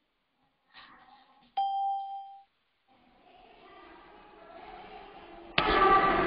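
A single electronic ding, an app notification chime, about a second and a half in: one clear tone that fades out within a second. Near the end a sudden loud burst of noise cuts in.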